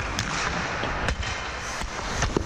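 Hockey skate blades scraping on rink ice, with two sharp clacks about a second apart from stick and puck.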